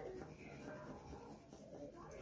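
Wax crayon rubbing back and forth on paper, faint scratchy coloring strokes.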